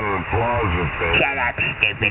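Speech received over a shortwave amateur radio on lower sideband, with the thin, narrow-band sound of a receiver's audio. A voice talks without pause throughout.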